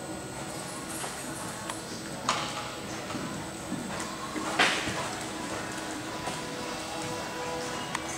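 Background music playing over a horse cantering on arena footing, with two louder thuds about two seconds and four and a half seconds in as its hooves land over fences.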